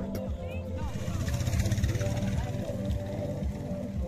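Background music with a steady bass line, with people's voices over it. A rushing noise swells through the middle and fades again.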